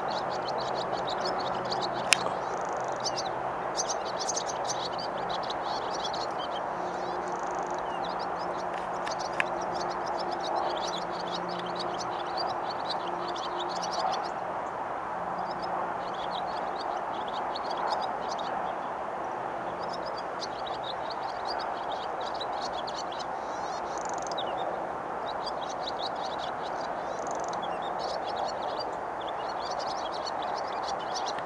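Swallows twittering: a busy, continuous stream of quick high chirps over steady background noise, with one sharp click about two seconds in.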